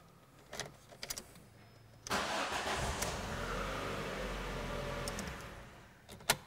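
A few light clicks as the cloned key goes into the Ford Focus ignition, then about two seconds in the engine cranks and starts, running steadily for about three seconds before the sound falls away near the end. The start shows that the car's immobiliser accepts the cloned key.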